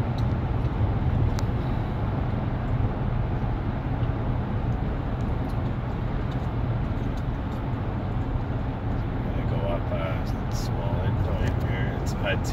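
Steady drone inside the cab of a 2018 GMC Sierra 1500 at highway cruising speed. Its 6.2-litre L86 V8 is running at about 2000 RPM in seventh gear under load, pulling an 8000 lb travel trailer, and is heard together with road noise.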